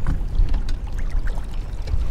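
Wind rumbling on the microphone over water lapping around people standing in shallow water, with a few faint ticks.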